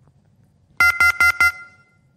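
Telephone line tone over a call-in phone line: four quick, even beeps about a second in, the sign that the caller's call has dropped.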